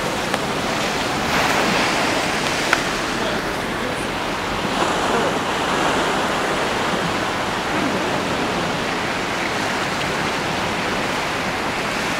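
Storm-surge seawater rushing over a flooded street in a steady, loud wash that swells louder a couple of times.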